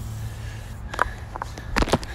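A few sharp clicks and knocks from a hedge trimmer being handled on pavement, the loudest cluster near the end, over a low steady hum.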